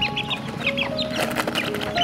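A brood of young chicks peeping, with many short high chirps overlapping in quick succession. Faint background music with held notes runs underneath.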